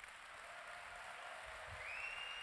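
Audience applause at the end of a talk: even clapping that builds slightly. A steady high tone joins in near the end.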